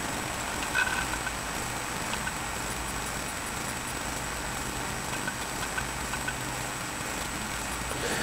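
Steady low hum and hiss of background noise picked up by the microphone, with a faint brief sound about a second in.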